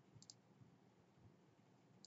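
Near silence, with two faint computer-mouse clicks close together just after the start.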